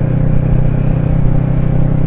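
Sport motorcycle's engine running steadily while cruising, heard from the rider's helmet camera with a constant rush of wind and road noise over it.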